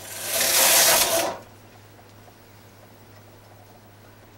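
Singer Mod 155 bulky knitting machine's carriage drawn across the needle bed to knit one row: a rasping slide for about a second and a half that swells and then dies away.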